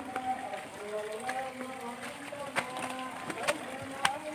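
A voice chanting or singing in long held notes that step from pitch to pitch, with scattered sharp clicks and knocks over it.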